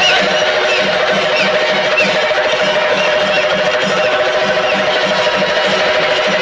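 Kerala chenda drums beaten with curved sticks in a fast, steady rhythm, as in a temple percussion ensemble, with a held high tone sounding over the drumming.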